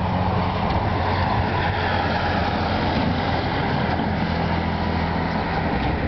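Highway traffic, with a heavy vehicle's engine running steadily under continuous road noise.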